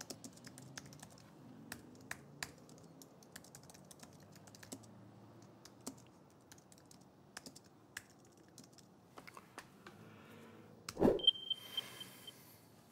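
Faint, irregular typing on a computer keyboard, key clicks at an uneven pace. About eleven seconds in comes a louder thump with a short high chime and a brief whoosh: a chat message being sent.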